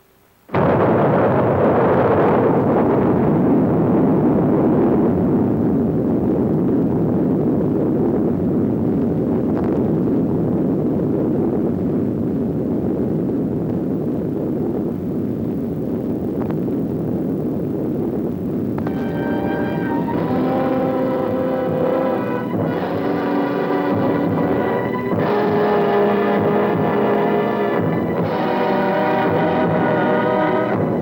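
Atomic bomb detonation on a film soundtrack: a sudden loud roar of noise sets in about half a second in and slowly dies away. Orchestral music comes in over it about two-thirds of the way through.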